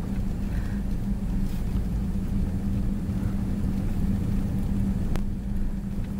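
Steady low hum of a car's engine and road noise heard inside the cabin while driving slowly, with a faint click about five seconds in.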